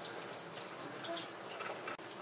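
Bathroom tap running, water falling into the sink and over a silicone brush-cleaning glove as a brush is rinsed against it; a steady splashing that cuts out briefly at the very end.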